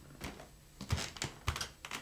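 Bare feet walking on a hardwood floor: a few low thuds about half a second apart, mixed with sharp clicks.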